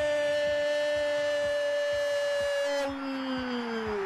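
Arabic football commentator's long held "goooool" shout celebrating a goal, one sustained note at a steady pitch that slides down near the end as his breath runs out.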